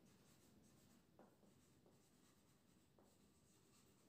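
Near silence, with a few faint scratches of a marker pen writing on a whiteboard.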